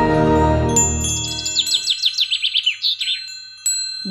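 A music track with a bass line stops about halfway through. Quick, high chirps, like a flock of birds twittering, carry on over steady ringing chime tones.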